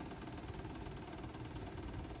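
Faint, steady low hum with a light hiss; no distinct events.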